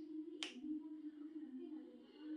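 A single sharp snap about half a second in as a length of embroidery thread is pulled taut between the hands, over a faint low hum.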